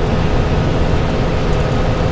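Converted school bus cruising at road speed, a steady drone of engine and road noise heard inside the cab.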